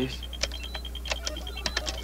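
Computer-terminal sound effect: a rapid, even string of short beeps at one high pitch, mixed with scattered sharp clicks, as text and a diagram come up on a display screen. A low steady hum runs beneath.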